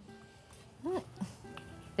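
Quiet background music with held notes, and a short rising-and-falling voice sound just before a second in, followed by a briefer one.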